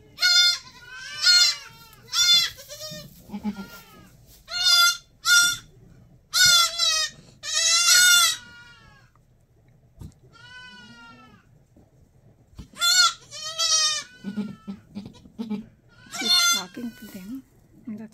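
Newborn goat kids bleating: repeated high, wavering calls coming in a run, with a lull in the middle, then more calls. A few short low grunts sound in the second half.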